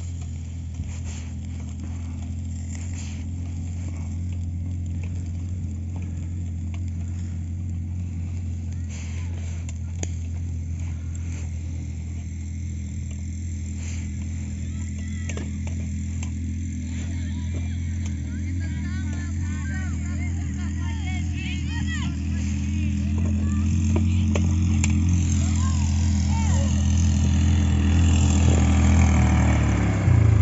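Small engine of a Stels Kapitan motorized towing dog running steadily with a low hum, getting louder over the last several seconds as it comes closer.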